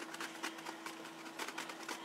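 Faint small taps and rustles of a silicone pastry brush being handled over a raw pie crust, over a steady low hum.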